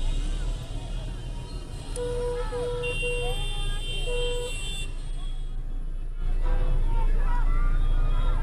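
Car horns honking in a string of short beeps about two to four seconds in, over people shouting in the street and a steady low rumble of traffic. The crowd noise gets louder about six seconds in.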